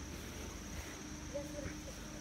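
Insects trilling steadily at one high pitch, over low rustling and handling noise from a camera carried while walking through grass.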